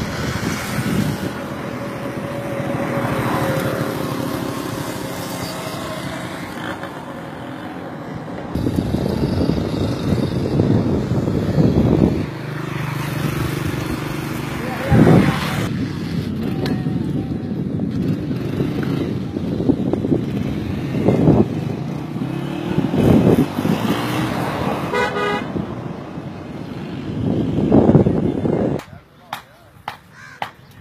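Road traffic and wind noise on a bridge, with vehicles passing in loud surges and a brief horn toot about four-fifths of the way through. Indistinct voices are mixed in.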